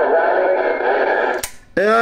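A voice coming in over a CB radio on AM, sounding thin and narrow through the Cobra 148 GTL's speaker. It cuts off with a click about a second and a half in as the other station unkeys, and a man's voice starts up close near the end.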